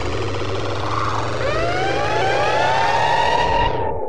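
A siren-like sweeping sound effect over the music: several stacked tones glide up and then slowly fall. Just before the end the music's beat and high end cut off, leaving the falling tone on its own.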